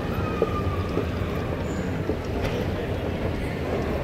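Moving walkway running with a steady low rumble under busy terminal ambience, with a few faint clicks and a faint steady tone in the first second.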